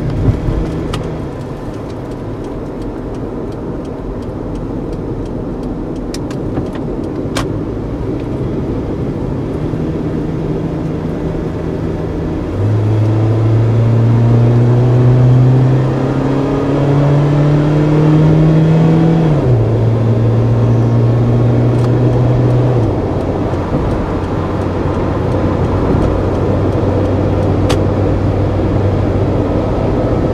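Car engine and tyre noise heard from inside the cabin while accelerating onto an expressway. About halfway through, the engine note grows louder and rises in pitch, then drops in two sudden steps, the pattern of gear changes under acceleration.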